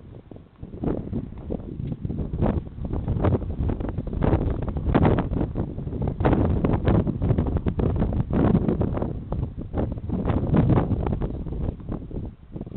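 Wind buffeting the microphone: an uneven low rumble that swells in gusts from about a second in and eases near the end.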